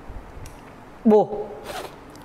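A man's voice speaking Khmer: a pause, then one short syllable about a second in, and a brief hiss near the end.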